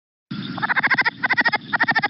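Recorded southern leopard frog call starting about a quarter second in: three quick runs of rapid pulses, the species' chuckle, over a low noisy background.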